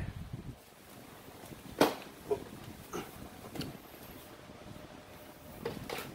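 A few short, light clicks and knocks of metal tools being handled, the sharpest about two seconds in: a hex bit socket and impact wrench being readied on a motorcycle brake disc bolt. The impact wrench is not running.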